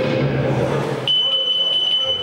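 Electric-guitar amplification feedback: about halfway through, a single steady high whistle sets in over the fading ring of the band's instruments and holds without change.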